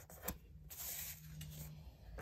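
A sheet of paper rustling and sliding over a cardboard board as it is lifted and folded over, with a light tap about a quarter second in.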